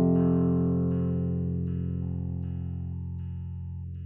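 Slow electronic music: a held keyboard chord slowly fading, with soft higher notes changing about every half second above it.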